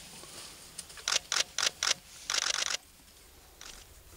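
Camera shutter clicks: four single clicks about a quarter second apart, then a quick burst of several more in rapid succession.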